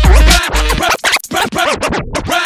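DJ scratching on a Rane Twelve turntable controller running Serato: quick back-and-forth pitch sweeps of a sample over a hip hop beat. The beat drops out about half a second in, leaving the scratches, which get faster and shorter near the end.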